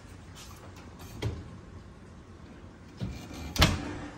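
A sharp knock about three and a half seconds in, after a lighter click about a second in, over a low steady background hum.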